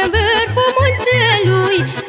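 Romanian folk song: a woman's voice sings a quickly wavering, ornamented melody over a band accompaniment with a steady, regular bass beat.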